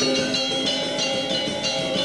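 Balinese gamelan music: bronze metallophones struck in a quick run of bright, ringing notes.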